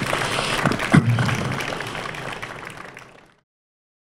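Audience applauding, fading out and stopping about three seconds in.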